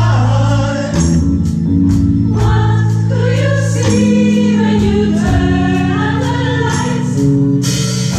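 Choir singing long held notes with a live band: sustained bass underneath and a steady percussion beat.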